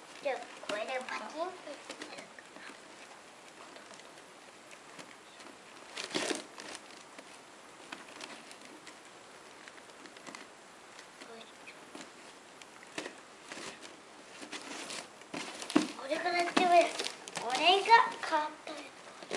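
Gift wrapping paper and ribbon crinkling and rustling as a present is unwrapped, mostly faint, with one sharper rustle about six seconds in. Voices talk briefly at the start and more loudly in the last couple of seconds.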